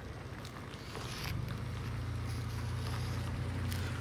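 Low, steady engine rumble of a vehicle on the street, swelling about a second in and holding, with faint scratches of sidewalk chalk drawn across concrete.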